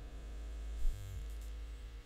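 Low steady electrical hum with faint hiss, the background noise of a voice-over recording. One faint short sound comes a little before the middle.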